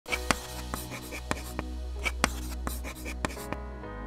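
Chalk tapping and scratching on a blackboard: a string of sharp, irregular taps that stops shortly before the end, over background music with held notes.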